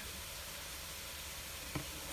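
Diced onion and garlic frying in oil in a pan: a quiet, steady sizzle as the onion softens.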